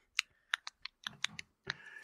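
Computer keyboard typing: a quick, irregular run of light key clicks, about ten in two seconds, heard quietly.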